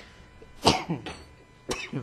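A person coughs once, a little over half a second in. A shorter, sharp sound follows near the end.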